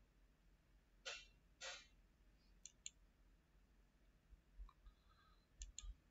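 Near silence broken by faint computer mouse clicks: two short soft rustles about a second in, then two quick pairs of clicks, one pair midway and one near the end.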